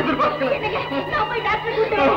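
Speech: film dialogue, with a steady low hum underneath that stops shortly before the end.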